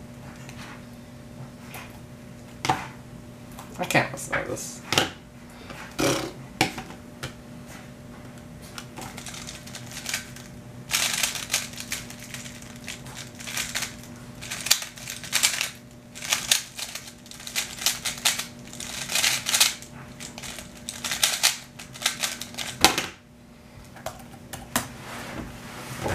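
A plastic 3x3 speedcube being turned by hand: scattered clicks at first, then a dense, fast run of clacking turns for about thirteen seconds during a timed solve. The clicks stop abruptly near the end.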